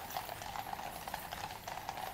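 Shod hooves of two horses walking on a tarmac road: a steady, irregular clip-clop.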